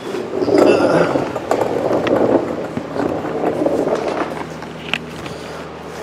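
Rustling and scraping handling noise as a hand-held camera is moved out from under a raised car, with a few small clicks.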